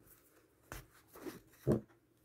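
A few soft, brief rustles of an embroidery fabric square being handled and turned over, with a short low sound near the end.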